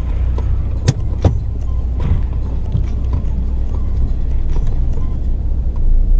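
Hyundai Creta heard from inside the cabin while driving: a steady low rumble of engine and road, with two sharp clicks about a second in.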